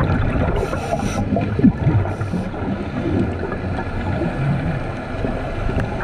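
Underwater sound through a camera housing: scuba divers' regulator exhaust bubbles gurgling over a steady low rumble, with two short hissing bursts of exhaled bubbles, one about half a second in and one about two seconds in.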